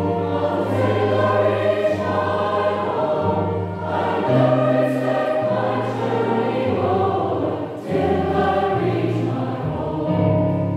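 Large mixed choir of men's and women's voices singing a gospel-style song in harmony, with sustained notes in a reverberant church and a short break between phrases about eight seconds in.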